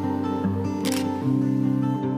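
Background music with a single camera shutter click just under a second in.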